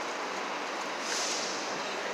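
Steady city street noise: an even hiss of distant traffic.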